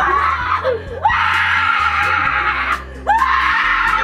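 A woman screaming in fright: a short cry at the start, then two long high screams, the first about a second in and the second about three seconds in, over background music.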